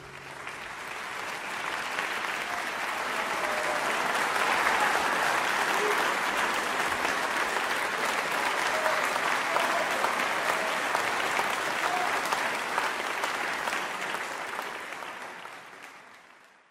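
Audience applauding, with a few faint short shouts. It builds over the first few seconds and fades out near the end.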